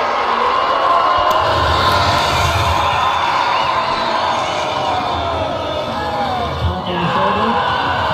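A woman screaming and wailing in long, drawn-out cries of anguish, with crowd noise around her.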